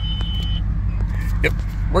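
Steady low rumble of road and engine noise inside the cabin of a 2015+ Ford Mustang GT on the move. There is no whine or whir from the rear differential, which has just had its fluid changed.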